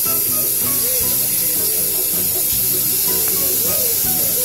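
Background music over a steady high hiss from a dental prophy handpiece polishing teeth.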